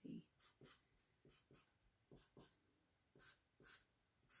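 Fine point marker drawing on printer paper: a faint series of short scratchy strokes, mostly in quick pairs.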